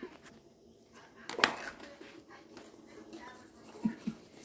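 A single sharp click or knock about a second and a half in, over quiet room tone, with a few faint short sounds later on.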